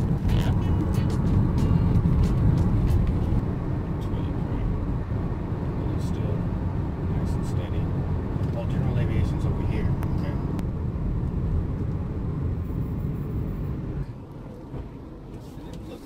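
Car cabin noise while driving at highway speed: a steady low road and engine rumble, which drops noticeably in level near the end.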